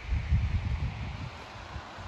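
Wind buffeting the microphone: an uneven low rumble through the first second, easing into a fainter steady hiss.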